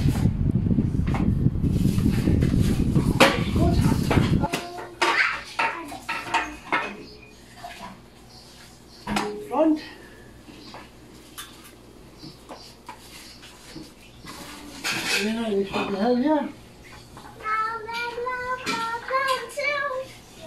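Metal tools and parts of a stationary exercise bike clinking and knocking as they are picked up and fitted, a scattered series of short clatters. For about the first four seconds a loud rumble of the microphone being handled covers everything.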